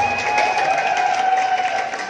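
Audience cheering and clapping as the dance music cuts out, with one long high held tone that rises just at the start and carries on over the cheers.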